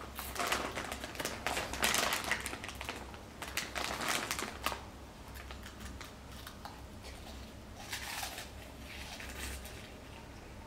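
A crinkly snack bag of Cheetos rustling and crackling as it is handled, mixed with crunchy chewing, in irregular bursts that are busiest in the first half and come back briefly near the end.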